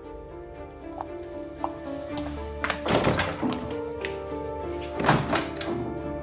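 Dramatic background music with sustained held notes, a deep bass layer coming in about two seconds in, and two heavy thuds about two seconds apart, one halfway through and one near the end.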